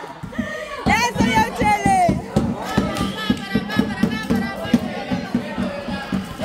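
Metal cooking pots and pot lids beaten with sticks as makeshift drums, a fast, steady clatter of strikes, under high-pitched shouting and cheering voices.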